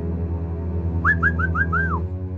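Background music with a steady low drone. About a second in comes a run of five short whistled notes, each sliding up and then holding, the last one sliding down.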